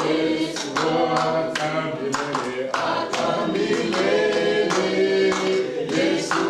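A church congregation singing a worship song together, with hand clapping.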